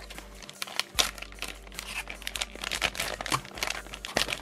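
Plastic blister pack of soft-plastic fishing baits crinkling and crackling irregularly as it is handled by hand.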